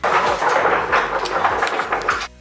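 Clothing fabric rubbing and rustling right against the camera microphone as the camera is carried and handled, a loud dense crackle that starts abruptly.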